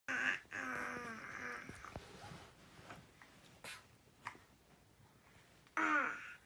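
A baby babbling: a short loud call at the start, then a wavering, drawn-out vocalization for about a second. After a quieter stretch with a few soft taps, a brief call falling in pitch comes near the end.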